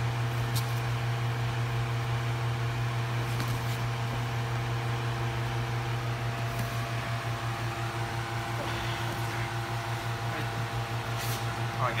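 A steady low mechanical hum with a few fainter steady tones above it, like a ventilation fan or air-conditioning unit running, with a few faint brief rustles.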